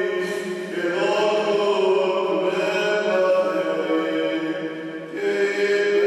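Greek Orthodox priest chanting the Gospel reading over a microphone: one male voice intoning on long, level notes, with short breaks between phrases about a second in and again near the end.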